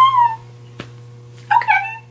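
A woman's high-pitched excited squeals: two short cries, each falling in pitch, one right at the start and one about a second and a half in, over a steady low electrical hum.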